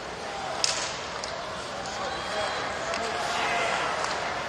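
Ice hockey arena sound: steady crowd chatter and voices, with a sharp clack of hockey stick on puck about two-thirds of a second in and fainter clacks a couple of times after.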